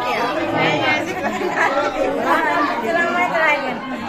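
Several women talking over one another in lively overlapping chatter.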